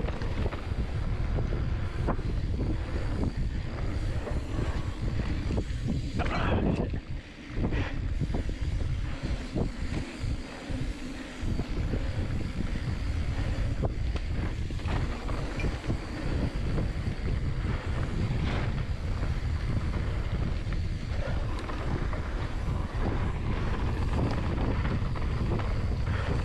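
Wind buffeting the camera microphone as a mountain bike rolls fast down a dirt trail, with tyre noise on the dirt and scattered clicks and knocks from the bike. The rumble drops briefly about seven seconds in and stays lighter for a few seconds before building again.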